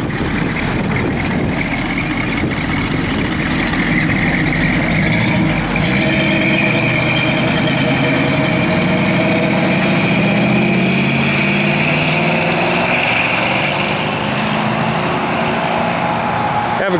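1966 Chevrolet Chevelle Malibu's 327 cubic-inch V8 with a four-barrel carburettor and Flowmaster dual exhaust, idling, then from about six seconds in pulling away under acceleration, the engine note climbing.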